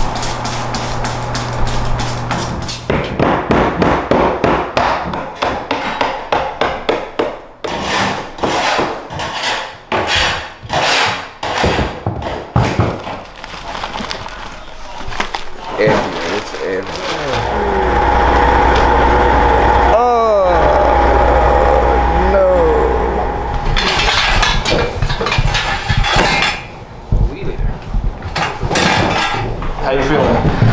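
Handling and bagging of hoarded rubbish: dense, irregular rustling, knocks and clatter, with voices at times. A steady low hum comes in about halfway through and stops a few seconds later.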